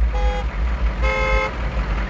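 A vehicle horn tooting twice, a short blast and then a slightly longer one about a second in, over a low rumble.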